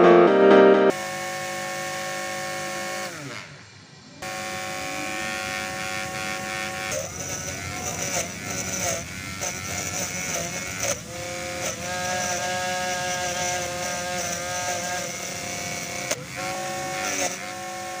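Small DC motor whining as it spins a homemade grass-cutting blade. It winds down and stops about three seconds in, starts again a second later, and from then on its pitch wavers and dips as it cuts grass.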